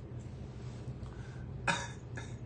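A man's single short cough near the end, over a steady low hum of background noise.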